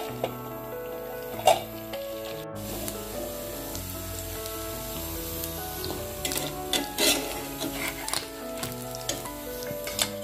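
Fish frying in oil in a pan, a steady sizzle, with a few sharp knocks of a spatula against the pan. Background music with held, stepping melody notes plays throughout.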